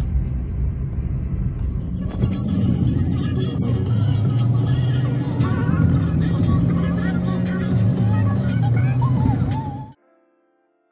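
Bass-heavy song with a singing voice playing over a car stereo inside the cabin, over a low road rumble; it starts about two seconds in and cuts off abruptly near the end.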